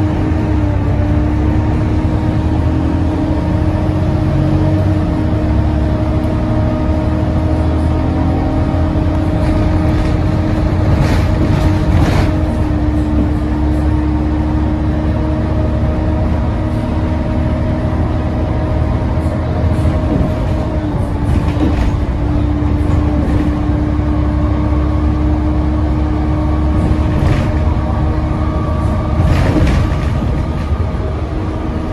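Volvo B7TL double-decker bus driving, heard from the lower deck: a steady diesel rumble with a constant hoover-like whine from the blaring cooling fans. A few brief knocks and rattles come through, about a third of the way in and again near the end.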